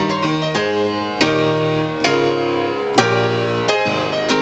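An upright piano playing a ragtime piece, sight-read from sheet music: a steady run of notes and chords, with sharply struck chords about one, two and three seconds in.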